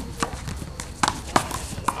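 A one-wall handball rally: the small rubber ball is slapped by hand and smacks off the wall and the court, four sharp cracks at uneven spacing.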